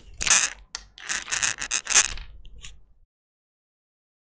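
Scraping, rustling noise in about five strokes over three seconds, then cutting off suddenly.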